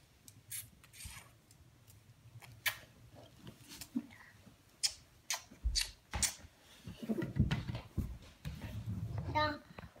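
A small child blowing kisses: a scattered run of light lip-smack clicks, with a few dull bumps and handling noise in the last few seconds.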